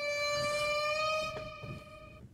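A single steady, horn-like tone held for about two seconds at one pitch, fading out near the end, with a faint click partway through.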